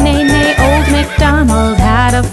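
A cartoon horse whinny sound effect over upbeat children's song music with a steady beat.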